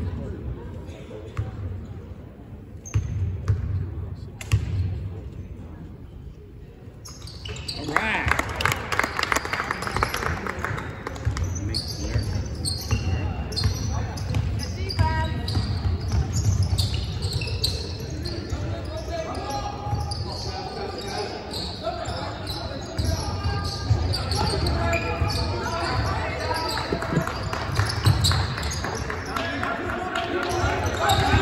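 Basketball bouncing on a gym's hardwood floor amid a crowd's chatter echoing in the hall. The court and crowd noise grow louder about eight seconds in.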